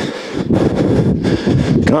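Loud, steady rushing noise on the microphone with no clear voice in it.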